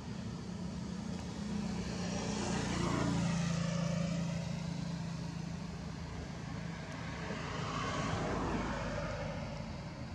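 Motor vehicle engine noise over a steady low hum, swelling and fading twice: loudest about three seconds in and again around eight seconds, as if passing by.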